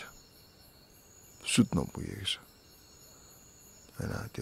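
A man's voice saying a short phrase about one and a half seconds in, between pauses, over a faint steady high-pitched hum.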